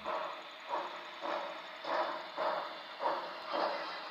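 Steam locomotive exhaust chuffing at a slow, even beat: about seven chuffs, a little under two a second.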